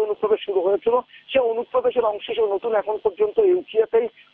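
Speech only: one continuous stretch of talk, thin and narrow-band as over a telephone line.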